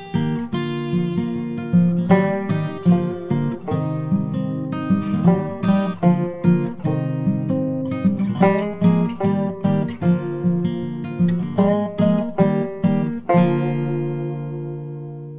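Background music: an acoustic guitar playing a steady run of plucked notes and strummed chords, each ringing out and fading.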